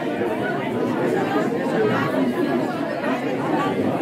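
Many people chatting at once in a large hall, overlapping voices with no single clear speaker.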